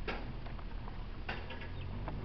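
Low steady rumble of a car rolling slowly over an unpaved gravel driveway, heard from inside the cabin, with a few sharp ticks at the start and again just past a second in.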